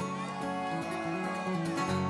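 Acoustic guitar and banjo playing together in an instrumental country song intro, the guitar strummed under picked banjo notes.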